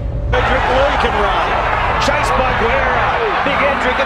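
Rugby league stadium crowd roaring, a dense mass of shouting voices that comes in suddenly a moment in, with a low steady music bed underneath and a few sharp clicks.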